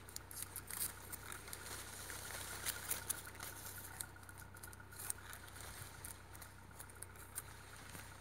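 Faint rustling and small scattered clicks of a plastic tying strip and leaves being handled as a grafted sapodilla branch joint is bound by hand.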